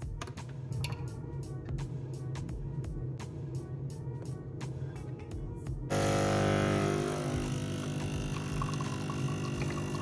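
Background music with a beat; about six seconds in, a louder steady hum of evenly spaced tones sets in as an espresso machine's pump runs and pours espresso.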